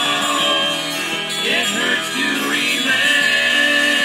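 Acid folk song playing from a 45 rpm vinyl single on a turntable, in a passage without words, with a long held melodic note near the end.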